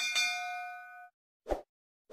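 Notification-bell 'ding' sound effect in a subscribe animation: one bright chime that rings for about a second and fades. A short soft pop follows near the end.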